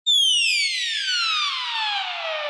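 Intro sound effect: a synthesized whistle-like tone that starts suddenly high and glides steadily down in pitch, with a hiss swelling beneath it as it falls.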